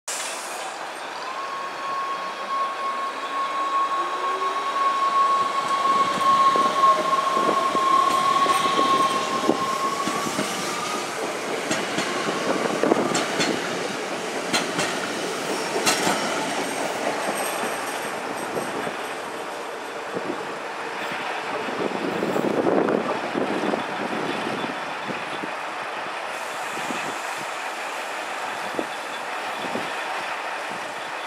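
NS Sprinter Lighttrain electric multiple unit pulling away: a high steady whine and a lower whine rising in pitch as it accelerates over the first ten seconds, then repeated clicks of the wheels on the track as the carriages pass.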